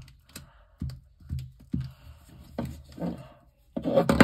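A glue stick rubbed in short strokes over folded paper on a wooden tabletop, about two scratchy, thudding strokes a second. A louder clatter of knocks starts just before the end.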